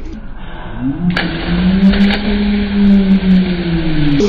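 A long, held shout at one steady pitch, rising at the start and dropping away near the end, from men jumping into a swimming pool.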